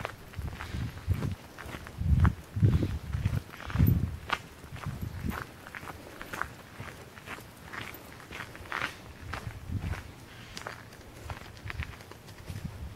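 A person walking at a steady pace on a gravel path: a run of low footstep thumps, heaviest in the first few seconds, with light gravel crunches between them.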